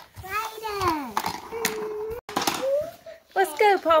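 A young child's wordless vocalizing in play: drawn-out voice sounds whose pitch slides down, holds, then rises, before a spoken word near the end.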